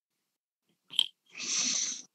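A single short mouth click about a second in, followed by a brief audible breath drawn in through the mouth just before speaking.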